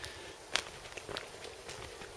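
Footsteps on a concrete garden path: three soft steps, a little over half a second apart.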